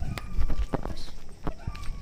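Footsteps on packed earth: a quick, irregular run of sharp steps as someone walks across a yard.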